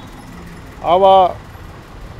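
Steady background hum of distant traffic, with a man saying one short word about a second in.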